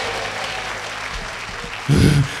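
Congregation applauding, the clapping slowly dying down.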